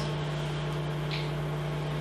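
Steady low electrical or ventilation hum of the room, with a faint short sound about a second in.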